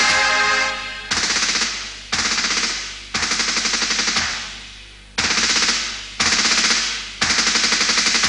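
Six short bursts of automatic gunfire, about a second apart with a pause in the middle, each a rapid string of shots that trails off. Music plays for the first second before the gunfire starts.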